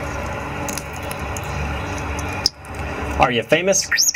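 An African grey parrot speaks a short talking-parrot phrase, "I'm a star", in the last second. Before it comes a steady hissing noise for about two and a half seconds, which stops abruptly.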